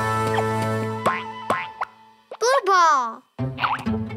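Cartoon background music for children with held chords and short sliding boing-like effects. About two and a half seconds in, a wavering, voice-like cartoon call glides downward in pitch, and the music breaks off briefly before starting again.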